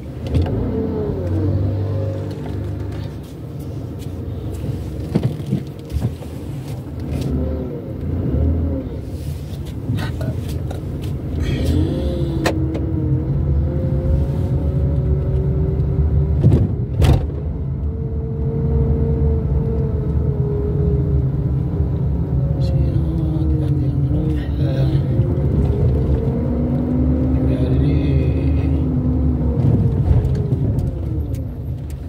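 Car driving slowly through a town street, heard from inside: a steady low engine and road rumble, with slow rising and falling tones above it.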